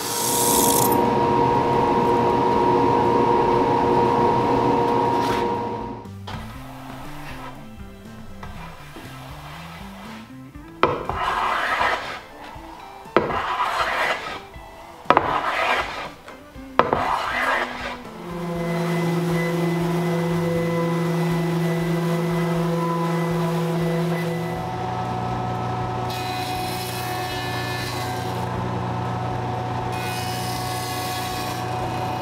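Plunge router whining steadily as it cuts along the edge of a hardwood board, stopping about six seconds in. Then four short strokes of a hand tool along the wood. From about 18 s a jointer runs with a steady hum, its tone dropping at about 24 s as a board is fed over the cutterhead.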